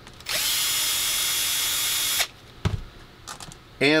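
A small cordless drill-driver runs at a steady speed for about two seconds and then stops, followed by a dull knock.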